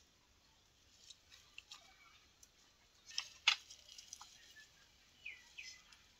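Faint scattered clicks and knocks of tool handling, the two loudest about halfway through, and two short bird chirps near the end.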